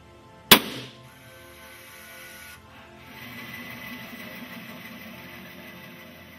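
Aluminium alloy tensile test bar snapping at its neck under load in a testing machine: a single sharp bang about half a second in, with a short ringing tail. Background music runs underneath.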